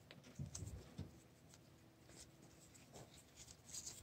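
Near silence with faint rustles and light ticks from a fabric wrist strap cord being threaded through a small camera's strap lug, a cluster about half a second in, one at a second, and another near the end.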